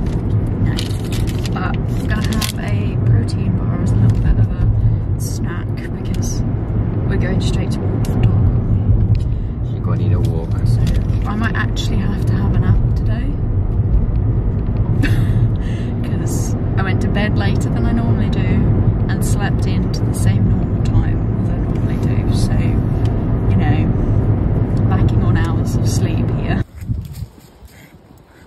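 Steady low rumble of a moving car's engine and tyres heard inside the cabin, with people talking over it.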